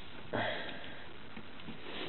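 A person's short sniff about a third of a second in, over a faint steady background hiss.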